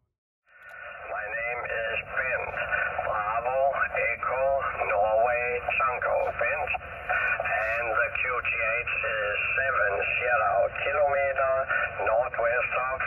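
Voice of a distant amateur radio station coming from a portable shortwave transceiver's speaker. It sounds thin and telephone-like, as on a single-sideband ham radio contact, and starts about half a second in.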